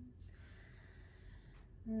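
A woman's low, steady hum cuts off just after the start. It is followed by a long, soft audible breath of about a second and a half, the calm breathing of a meditative yoga close.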